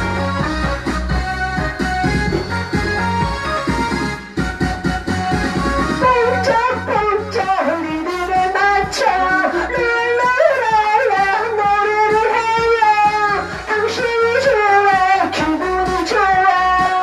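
Trot karaoke backing track playing an instrumental passage with a steady beat. About six seconds in, a man starts singing along into a handheld microphone, in the song's original female key.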